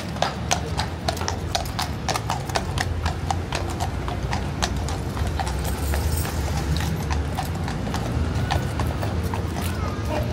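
Horse hooves clip-clopping on cobblestones at a walk, a quick, uneven run of sharp clops.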